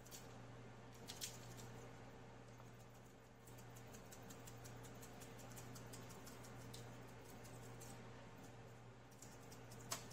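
Faint, light ticking and pattering of a seasoning shaker being shaken over a foil-lined pan of raw chicken wings, with one slightly louder click about a second in. A steady low hum runs underneath.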